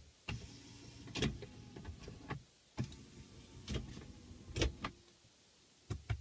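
BMW iDrive controller knob clicking as it is turned and pressed, a string of single clicks at irregular spacing over a low, steady hum.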